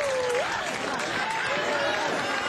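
Crowd clapping and cheering, with a few voices calling out over it.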